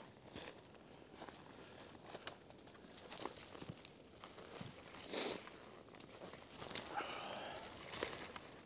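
Faint footsteps of buckle shoes in shallow snow, with small snaps and rustles of twigs and brush underfoot. About five seconds in comes one louder step, and the sound picks up a little near the end.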